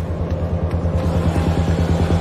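Low, rapidly throbbing bass drone of a tense soundtrack, swelling steadily louder.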